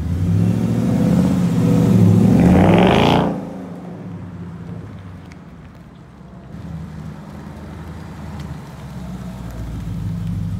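Ford Mustang accelerating hard away from the camera, the engine note rising in pitch for about three seconds, then dropping away suddenly as the car lifts off and goes into the distance. A lower, steady engine sound carries on and grows again near the end as the car comes back close.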